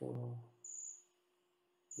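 A brief vocal hesitation at the start, then a faint, short, high-pitched chirp that comes twice, the second time near the end, over a low steady hum.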